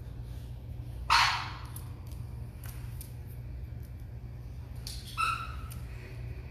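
A young Malinois-type dog gives a brief high-pitched whine a little after five seconds in. A single loud, short, noisy sound comes about a second in.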